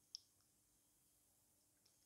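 Near silence, broken by a single short faint click just after the start.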